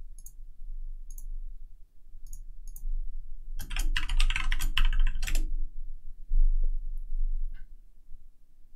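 Typing on a computer keyboard: a few separate clicks, then a quick run of keystrokes for about two seconds in the middle as a login password is entered.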